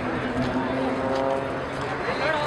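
Zlin Z-50 aerobatic planes flying in formation: a steady droning tone from their piston engines and propellers that fades out near the end.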